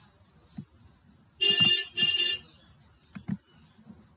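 Two short horn-like beeps in quick succession, each about half a second long, starting a little under a second and a half in. Otherwise only faint low knocks.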